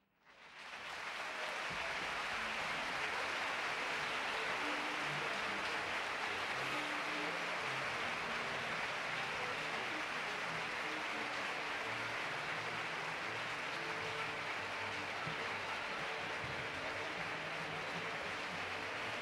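Opera house audience applauding: the applause swells up within the first second or two after the orchestra stops, then holds steady.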